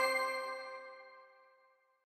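Tail of a bell-like chime logo sting, its ringing tones fading away over about a second.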